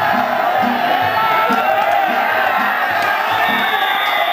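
Danjiri festival crowd and rope-pulling teams shouting and cheering together over the danjiri's festival percussion, a steady beat about twice a second.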